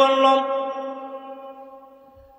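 A man's voice holding one long chanted note through a microphone, the drawn-out end of a phrase in a sung sermon delivery; the pitch stays steady while it fades away over about two seconds.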